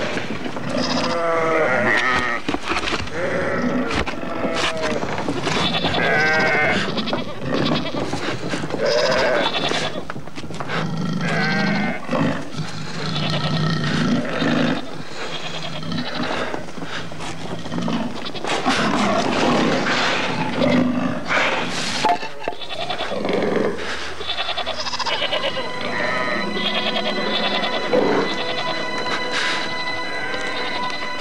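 Goats bleating again and again in wavering calls over a tense music score, with sharp hits scattered through it.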